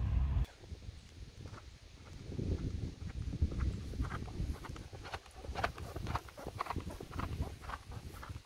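Horse trotting on a packed dirt track: a steady run of hoofbeats that grow clearer in the second half as the horse passes close, then begin to fade.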